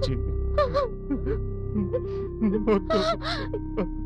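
A woman sobbing in short, wavering whimpers, with sharp gasping breaths about three seconds in, over held notes of background music.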